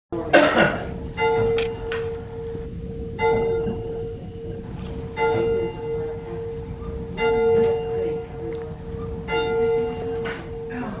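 Church bell rung by pulling its rope, struck five times at an even pace about two seconds apart, each stroke ringing on into the next. A brief noisy knock comes just before the first stroke.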